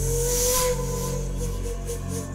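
Tense film background score: a sudden hissing swell with a slightly rising whistling tone over a low, steady drone. It fades after about a second into short repeating notes.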